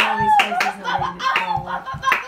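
Hand clapping, a couple of claps a second, with high-pitched voices rising and falling over it.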